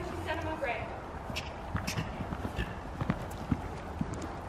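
Hoofbeats of a horse cantering on the sand footing of an arena: soft, uneven thuds as it passes close by. A faint voice is heard in the first second.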